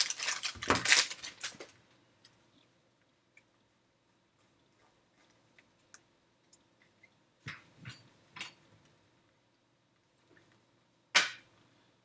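Foil wrapper of a baseball card pack tearing open and crinkling for the first second and a half, then quiet with faint clicks of cards being handled. A few short rustles of the cards come about seven and a half to eight and a half seconds in, and a sharper rustle near the end.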